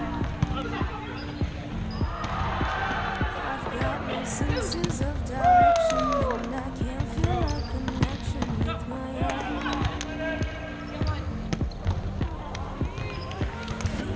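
Volleyball play on a hardwood gym floor: repeated sharp hits of the ball off hands and floor, with players' voices and background music underneath.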